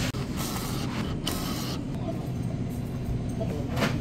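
Lottery ticket vending machine dispensing a scratch-off ticket: two short mechanical feeds about half a second and about a second and a quarter in, then a click near the end as the ticket is taken from the slot, over a steady low hum.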